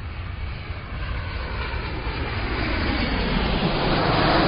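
Intro sound effect: a deep rumbling rush that swells steadily louder.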